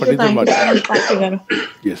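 Speech over a video call, ending in a short "yes".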